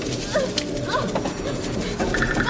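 A woman's frightened whimpering cries: short sobbing calls that each fall in pitch, a few in quick succession, over a low steady background.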